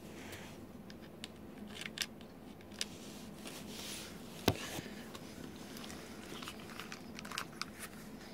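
Sparse small clicks and light handling noise over a faint steady room hum, with the sharpest click about four and a half seconds in and a few quick clicks near the end.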